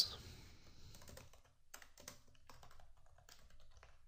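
Faint typing on a computer keyboard: quiet key clicks coming in irregular runs as a word is typed.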